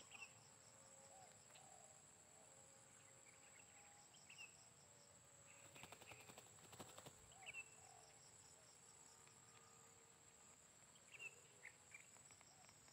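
Near silence with a faint, steady, high-pitched insect drone and a few short bird chirps. About six seconds in comes a brief flurry of sharp clicks as a spotted dove flaps its wings.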